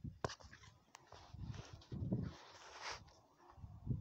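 Hands and tools working around a truck engine's compressor belt pulleys: scattered clicks and knocks with rustling, and a short hiss a little past two seconds in.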